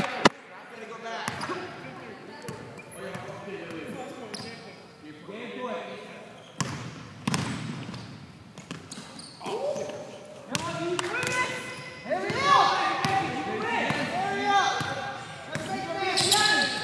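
A basketball bouncing on a court floor in sharp knocks during play, with players' voices and calls that grow louder over the last few seconds.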